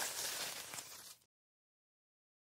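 Plastic grape bunch being pressed into a plastic toy trailer bed, a crackling rustle of small plastic clicks that cuts off suddenly about a second in.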